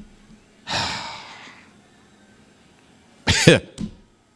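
A man sighing and chuckling: a breathy exhale about a second in, then a short voiced burst of laughter near the end.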